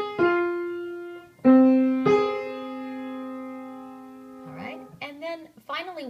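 A minor sixth played on a Yamaha piano as two notes struck one after the other, lower then higher. The pair is played again about one and a half and two seconds in, and both notes ring on together, dying away by about four and a half seconds.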